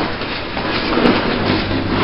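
Ice skate blades scraping and rumbling across the rink surface as skaters glide past close to the microphone, a dense, steady noise.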